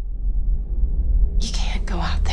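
A low, steady drone, with a whispered voice coming in about one and a half seconds in.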